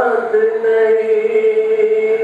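A man's voice reciting poetry in a sung, chanting style, holding one long steady note.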